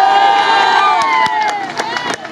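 Crowd of spectators, many of them young voices, cheering and shouting together, fading away in the second half with a few sharp claps.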